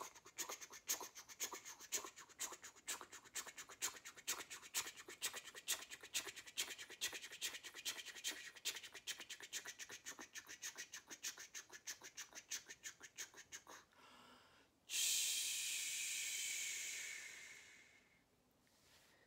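A woman imitating a steam train with her mouth: rapid, even "ch-ch" chugging puffs, about six a second, for some fourteen seconds. Then comes a louder, long steam-like hiss that fades away.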